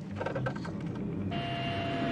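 Lockheed NF-104A jet engine as it taxis: about two-thirds of the way in, a rush of noise with a steady high whine comes in and grows louder. Before it there is a low hum and a brief faint voice.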